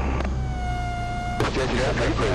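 Cessna 162 Skycatcher's stall warning sounding as a steady tone for about a second over the low drone of the engine, cutting off abruptly. It signals the wing nearing the stall as the aircraft is slowed in the landing flare.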